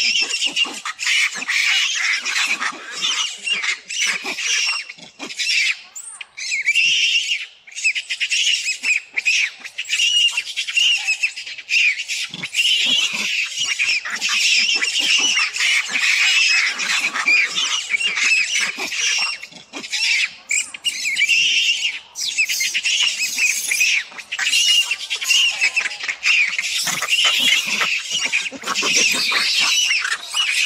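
Baby macaque screaming, shrill and almost unbroken, with a few short breaks.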